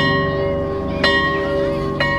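A school bell struck about once a second, each stroke sharp and ringing on, over a low sustained music bed.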